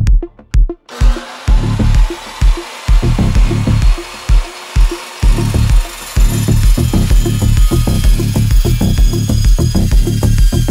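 Electronic music with a steady beat, joined about a second in by a metal-cutting chop saw running and cutting through aluminium tubing.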